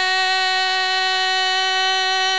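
A single musical note held at a steady pitch, rich in overtones, sustained without a break.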